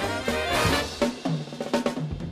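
Big band of trumpets, trombones, saxophones and rhythm section playing a fast swing number. The full ensemble sounds for about the first second, then a sharp accented hit, after which the band thins and the drum kit comes forward with snare and bass drum.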